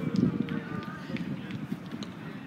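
Players calling out and running on an artificial-turf football pitch during a small-sided game, with a few short sharp knocks. A call fades away at the start, leaving quieter movement noise.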